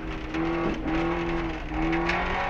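In-car sound of a 2000 Subaru Impreza STi's turbocharged flat-four engine running hard at speed, its note holding steady with two brief dips, over the rumble of tyres on a gravel road.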